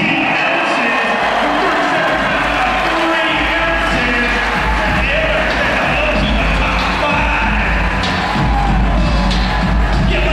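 Loud music over an arena public-address system, with a voice and crowd cheering mixed in. A heavy bass comes in a couple of seconds in and grows stronger toward the end.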